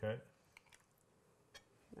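Faint, soft scooping of guacamole with metal spoons, with a few light clicks of a spoon against the dish.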